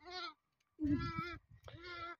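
Sheep bleating: a short call at the start, a longer wavering bleat about a second in, and another near the end.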